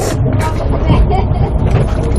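Low, steady rumble of a fishing boat's engine running, with a few light knocks on the deck.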